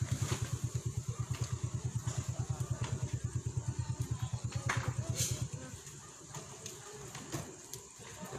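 Small motorcycle engine idling close by with a quick, even putter, stopping about five and a half seconds in.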